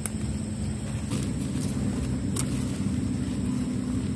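A steady low motor rumble with a held hum, getting louder about a second in, with a few light snaps as sweet potato shoots are broken off by hand.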